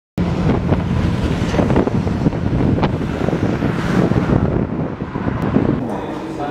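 Wind buffeting the microphone: a loud, rough, continuous rumble.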